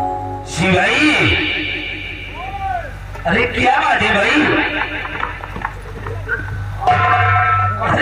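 A man's voice over a stage microphone, drawn out in long rising and falling glides, with the troupe's music running alongside.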